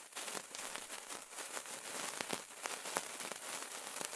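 Sparkler burning: a steady hiss dotted with many small, sharp crackles.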